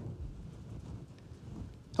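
A pause in speech: faint low background noise of the room, with no distinct sound.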